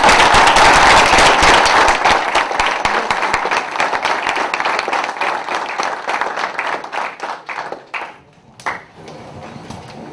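Room full of people applauding, loudest at first and thinning out over several seconds until it dies away about eight seconds in, with a last clap or two after.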